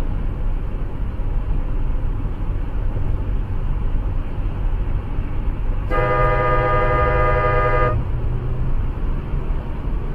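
Steady road and engine rumble of a car driving on a highway, heard from inside the car. About six seconds in, a vehicle horn sounds once and holds for about two seconds.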